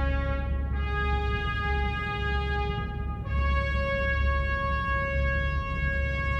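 Soundtrack music: long held chords that change about a second in and again about three seconds in, over a steady deep rumble.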